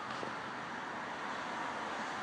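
Steady, quiet outdoor background noise, an even hiss with no distinct events.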